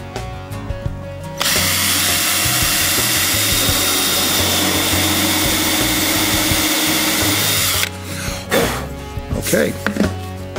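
Hand drill running at a steady speed as a FlushMount countersink bit bores a flush plug hole into soft pine. It starts about a second and a half in and stops sharply about six seconds later, with a thin steady whine over the noise.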